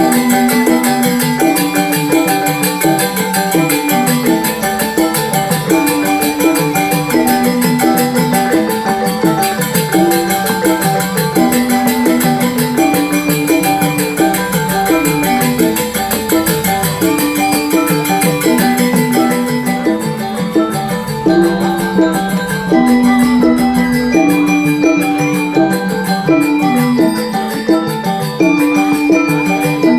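Balinese gamelan music: metal-keyed mallet instruments play a fast repeating melodic pattern over a steady high shimmer of percussion.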